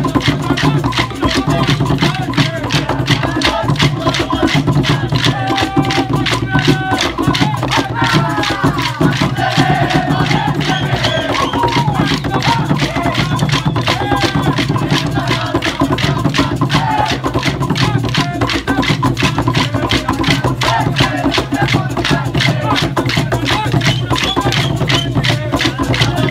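Maculelê music: atabaque drums and wicker caxixi rattles keep a fast, steady beat while wooden sticks clack in rhythm, with a group singing over it.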